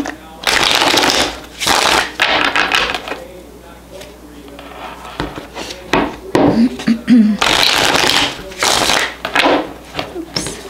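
Tarot deck being shuffled by hand: several bursts of rustling, slapping card noise, with a quieter pause a few seconds in before the shuffling resumes.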